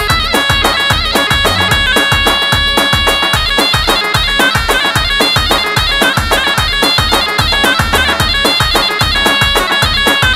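Amplified Kurdish dance music from a wedding band: a shrill, reedy lead melody over a steady, fast drum beat.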